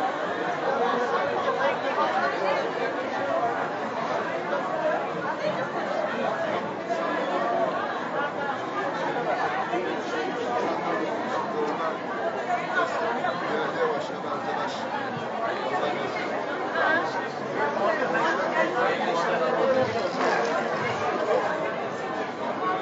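Crowd chatter in a busy covered market: many people talking at once in a steady, unbroken babble of overlapping voices.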